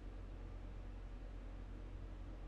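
Room tone: a faint steady low hum with light hiss from the recording microphone, with no distinct sound events.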